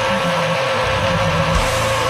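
Death metal music: a distorted electric guitar holds a long sustained note over the band, the bass and drums thinning out for a moment about half a second in before the full low end comes back.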